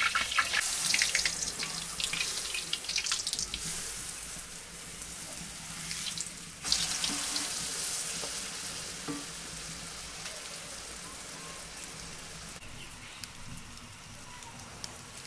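Flatbread frying in a wide pan of hot oil over a wood fire: a steady sizzle with small crackles. It breaks off and picks up again about six and a half seconds in, then gradually grows softer.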